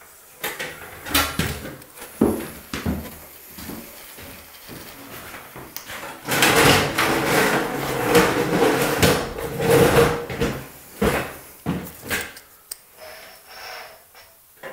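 Chalk line reel paying out its line: scattered knocks and clicks of handling the line and reel, then a louder continuous run of about four seconds midway as the line is drawn out, and a few more knocks near the end.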